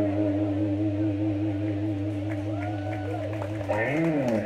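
Live electric guitars and bass holding one sustained final chord, which slides down in pitch near the end as the song closes.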